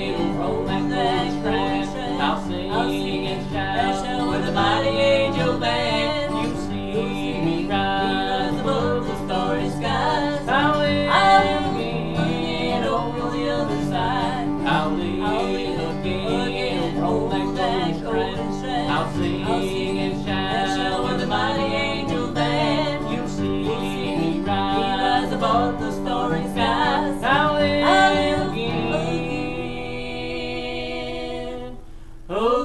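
Bluegrass gospel music: a steel-string acoustic guitar strummed and picked while a woman and a man sing in harmony.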